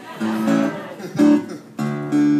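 Acoustic guitar chords strummed three times, each left to ring briefly.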